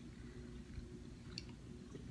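Faint chewing of a soft gummy candy, with a few small moist clicks about a second and a half in, over a steady low hum.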